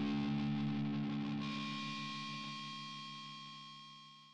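A final distorted electric guitar chord ringing out and slowly fading. A high steady tone comes in about a second and a half in.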